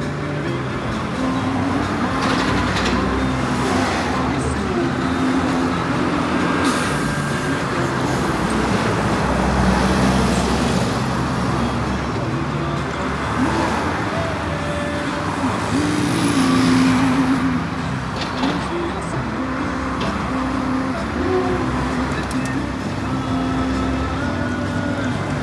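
Road traffic passing on a busy street, over a steady engine drone; the passing vehicles get louder about ten seconds in and again around seventeen seconds.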